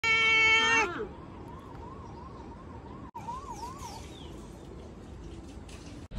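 Domestic tabby cat meowing once: a loud, drawn-out meow lasting under a second that drops in pitch as it ends.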